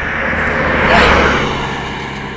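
A road vehicle passing close by, its engine and tyre noise swelling to a peak about halfway through and then fading.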